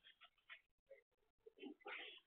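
Near silence: faint room tone with a few faint short sounds.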